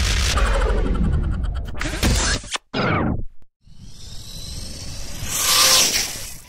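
An intro sound effect with music ends in a falling swoosh about three seconds in. After a brief gap, a Vaterra Halix electric RC truck splashes through a puddle, the spray hissing louder until it is loudest near the end.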